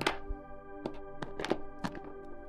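Soft background music of sustained, held tones, with a handful of light taps or knocks scattered through it, roughly one every half second in the second half.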